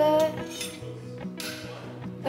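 Metal spoons clinking and rattling against one another as a child handles a sculpture made of spoons, with music underneath.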